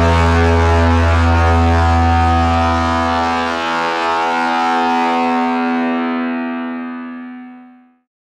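The final held chord of a rock song ringing out on guitar and bass. The low bass note drops away about three seconds in, and the chord then fades out to silence near the end.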